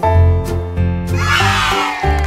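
Upbeat children's background music with a steady bass line. About a second in, a falling, sweeping sound effect rises over the music and slides down in pitch.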